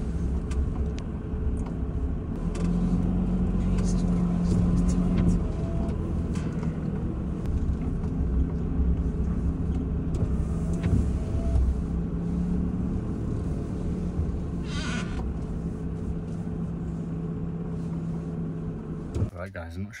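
VW Crafter van's diesel engine and road noise heard from inside the cab while it is driven slowly. There is a steady low drone with a few light knocks and rattles, and it cuts off about a second before the end.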